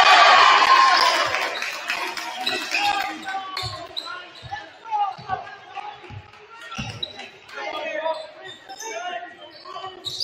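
A basketball bouncing on a hardwood gym floor, dribbled in irregular thuds, under voices shouting across a large hall. The voices are loudest at the start, cheering just after a home basket, and die down within about two seconds.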